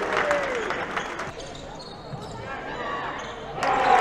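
Basketball game sound in a sports hall: a ball bouncing on the court with scattered knocks and players' voices. The sound drops sharply a little over a second in and comes back up suddenly near the end.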